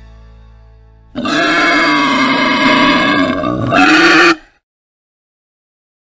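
Wild boar grumbling for about three seconds, starting about a second in and cutting off suddenly.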